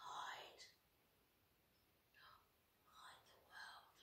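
Quiet whispering by a woman: a few short, breathy phrases with no voice behind them.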